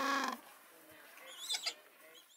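Gentoo penguin chicks calling: a short call at the start, then high, thin squeaky peeps about one and a half seconds in.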